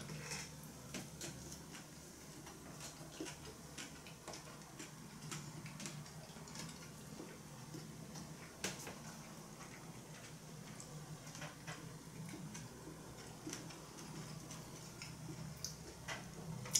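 Quiet eating sounds: faint, irregular little clicks of chewing and of chopsticks and a fork over a low steady hum, with one sharper click about halfway through.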